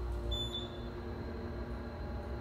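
Otis hydraulic elevator car riding with a steady low hum that eases about half a second in as it slows for the floor. A single short electronic chime sounds near the start, signalling arrival at the landing.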